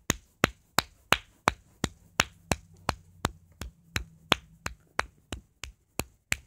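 A steady run of sharp, evenly spaced clicks or snaps, about three a second.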